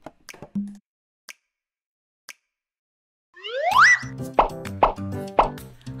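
A few wood-block-like clicks close the song, followed by about two and a half seconds of near silence. About three and a half seconds in, a cartoon 'bloop' sound effect glides sharply up in pitch. A bright children's music jingle with a steady beat starts right after it.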